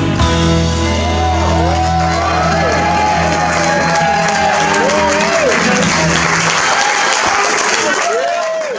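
A live band's final chord, struck at once on electric and acoustic guitars, bass and drums, is held for several seconds and then stops. Audience applause and cheering rise underneath it.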